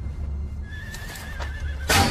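A horse whinnying: a thin, wavering, slightly falling call about a second long, over a low steady rumble. Just before the end a loud burst of noise breaks in.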